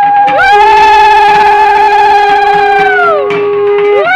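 Conch shells (shankha) blown together in long held notes at two pitches: the lower note holds steady, while the higher one glides up at the start and slides down about three seconds in, and a fresh blast starts right at the end.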